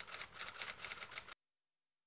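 A rapid run of sharp clicks, about seven a second, that cuts off abruptly about a second and a half in, leaving dead silence.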